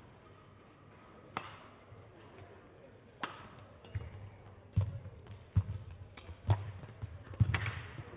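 Badminton rally: rackets strike the shuttlecock about once a second in sharp cracks, with heavier thuds from the players' footwork on the court floor. The loudest hits come in a cluster near the end.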